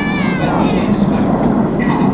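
A short high-pitched call near the start, rising then falling in pitch, over a steady outdoor noise.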